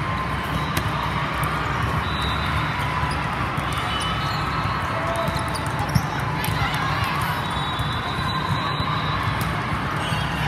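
Steady reverberant din of a large indoor volleyball tournament hall, with many courts going at once: background voices, scattered short shoe squeaks and ball hits. One sharp volleyball strike stands out about six seconds in.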